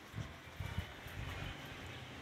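A few soft footsteps on loose gravel as a person steps back, faint knocks in the first second.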